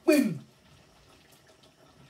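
A voice trails off in a falling pitch, then faint water runs and splashes at a kitchen sink as something is washed by hand.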